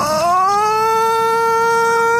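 A long held yell, sliding up in pitch over about half a second and then holding one steady note.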